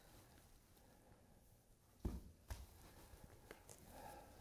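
Near silence for about two seconds, then two soft knocks half a second apart and a fainter one after, as a hardcover book is picked up from a table and handled.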